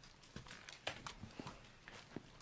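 Quiet room with a few faint, irregular clicks and taps.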